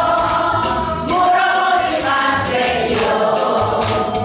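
Group singing of a Korean song in unison, led by a woman singing into a microphone, over a backing track with a steady beat.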